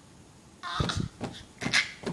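Baby laughing in two short, high-pitched bursts.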